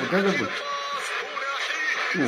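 Speech: a man's excited vocalising, then quieter talk.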